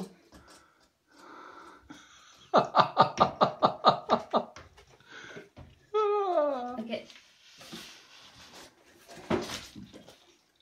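A person laughing in a quick run of about ten pulses, followed a second or so later by a long vocal sound that slides down in pitch.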